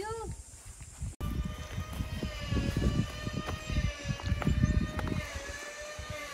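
A steady, high-pitched mechanical whine with several overtones, wavering slightly in pitch, over gusty wind buffeting the microphone, with a few sharp clicks.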